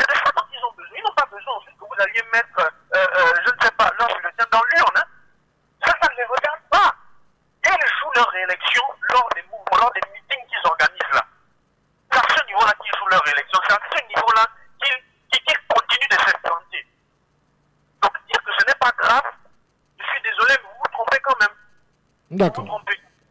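A caller's voice over a telephone line: speech in short phrases with brief pauses, sounding thin and narrow, with no bass.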